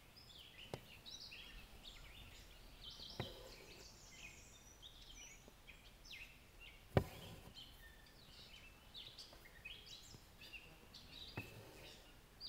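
Wild birds singing and chirping faintly in the background, with a few sharp clicks, the loudest about seven seconds in.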